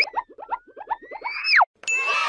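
Cartoon sound effect: a quick upward boing, then a rapid run of short blips, about eight a second, under a slowly rising whistle-like glide that drops sharply about a second and a half in.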